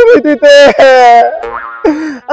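A voice singing in long, held, wavering notes over music. About one and a half seconds in it drops to a quieter stretch with short pitch glides, and then comes back.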